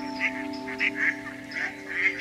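Ducks quacking in a quick series of short calls over background music with held chords.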